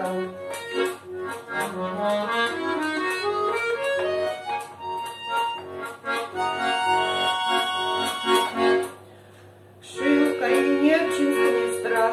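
Bayan (Russian chromatic button accordion) playing an instrumental interlude between sung verses: a melody over bellows-driven chords, in F-sharp major. Near the end the playing stops for about a second, then resumes.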